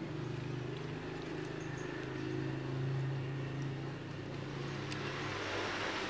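A steady low machine hum, with a rushing noise that swells near the end.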